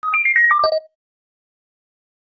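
A short electronic jingle of about six quick, clear notes, the first low, then a run falling step by step in pitch, over in under a second: an outro sting.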